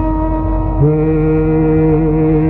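Carnatic classical music: a sloka melody in ragamalika moving in long held notes over a steady drone, stepping to a new note about a second in.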